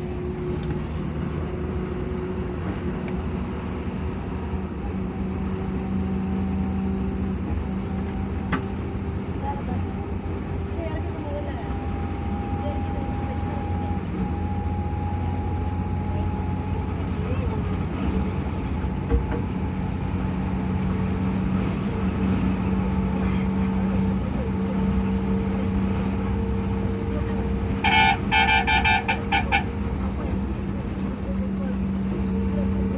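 Road vehicle's engine running steadily at speed, with a low hum and a faint, slowly drifting whine. Near the end a vehicle horn sounds in a quick series of short honks.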